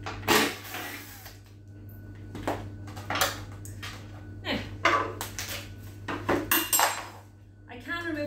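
Irregular knocks and metallic clinks of cabinet door hardware and a cordless drill-driver being handled and set down on a wooden door and the floor, over a steady low hum.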